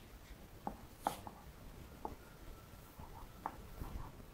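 Chalk writing on a blackboard: a handful of short, sharp taps and scratches at irregular moments as strokes start and end.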